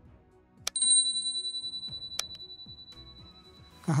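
A click sound effect followed by a high, bell-like ding that rings on and slowly fades over about three seconds. A second click comes about a second and a half after the first. Soft background music plays underneath.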